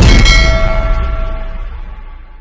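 A metallic clang sound effect struck once at the start, leaving several clear ringing tones that fade away over a second and a half or so, the sting of an animated channel logo.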